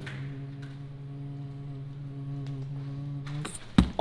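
One low note held steady and unchanging for about three and a half seconds, like a long hum, then cut off, followed by a short sharp knock near the end.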